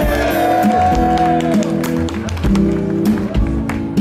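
A live Austropop band playing, with sustained keyboard chords and acoustic guitar and scattered sharp taps.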